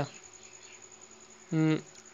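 A pause in a man's speech: a faint, steady high-pitched whine runs throughout, and about one and a half seconds in there is a single short, level hum from the man's voice.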